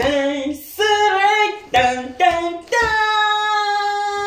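A woman and a child singing unaccompanied: a run of short sung syllables, then one long held note from near three seconds in.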